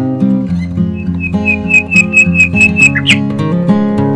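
Background music with a plucked-string, guitar-like sound. In the middle comes a fast run of repeated high notes, about five a second, ending in a quick upward slide about three seconds in.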